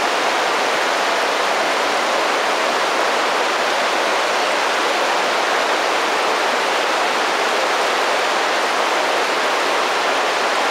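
Shallow river running over a cobble bed: a steady, even rush of flowing water that does not change.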